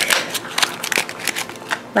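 Plastic packaging of a Shopkins two-pack crackling and crinkling as hands pull the pods out of it: a quick, irregular run of sharp crackles and clicks.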